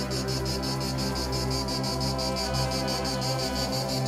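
An insect chirping in a fast, even, high-pitched pulse, over background music with long sustained low notes. The chirping stops suddenly at the very end.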